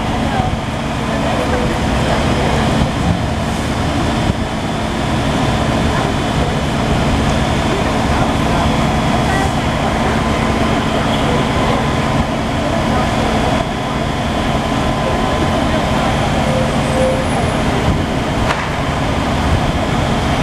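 Fire trucks' diesel engines idling, a loud, steady drone with a constant low hum that does not change.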